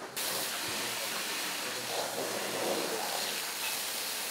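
Fire hose spraying a jet of water onto burned debris: a loud, steady hiss that starts suddenly just after the beginning.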